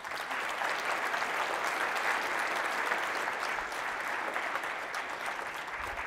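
Conference audience applauding steadily at the end of a talk, a dense even clapping that starts at once and tapers slightly near the end.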